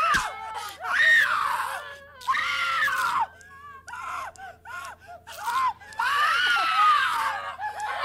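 A woman screaming in terror, several long high screams broken by short pauses.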